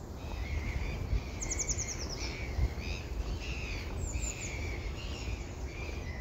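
Small birds chirping and singing, short calls repeating throughout, with a quick run of high, falling notes about a second and a half in. A low steady rumble runs underneath.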